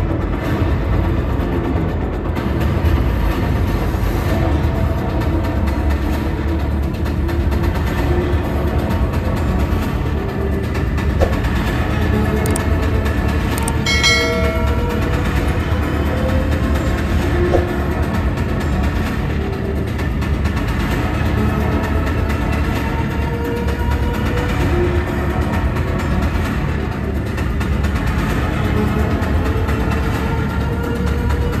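Loud, steady low-pitched din of a busy exhibition hall with music playing over it, and a brief chord-like pitched sound about fourteen seconds in.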